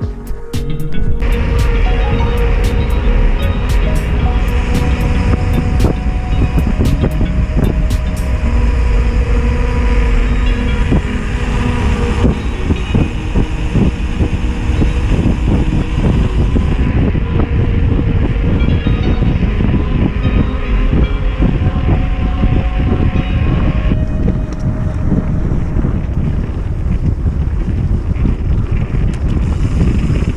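Heavy wind rumbling on the camera microphone of an electric mountain bike riding fast down a trail, with frequent clattering knocks from the bike over rough ground.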